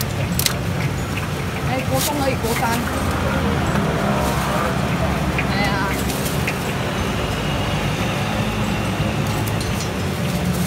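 Steady low rumble of road traffic with faint voices in the background, and a few sharp clicks and rustles as paper food boxes and a plastic bag are handled.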